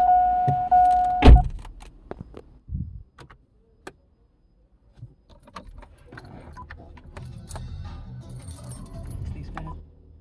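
A car's steady electronic warning tone cuts off with a loud thump about a second in, like a car door shutting. Scattered faint clicks follow, and faint radio music comes in about five seconds later.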